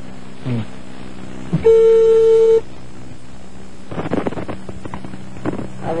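Telephone ringback tone over the phone line: one steady beep of about a second, the ringing of a call being placed again, before the line is answered.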